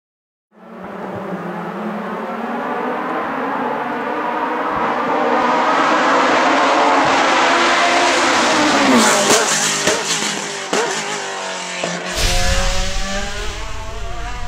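Osella FA30 hillclimb race car engine approaching at speed, growing louder to a peak about nine seconds in, then dropping in pitch with sharp pops and crackles as it brakes and downshifts. About twelve seconds in, a deep rumble comes in suddenly over it.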